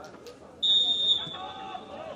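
Referee's whistle blown once, a long shrill blast starting just over half a second in that fades gradually, signalling the kick-off of the second half.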